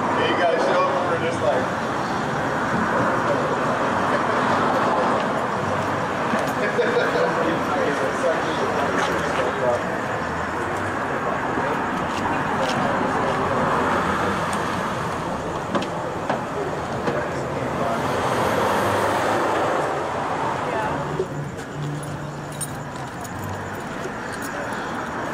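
City street ambience: steady traffic noise with indistinct voices underneath.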